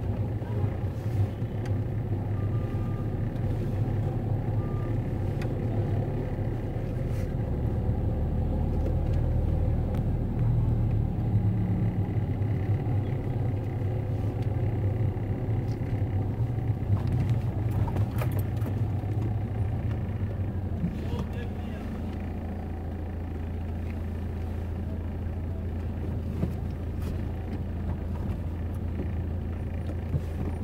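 Car driving slowly in city traffic, its engine and road noise a steady low rumble heard from inside the cabin, easing slightly about two-thirds of the way through.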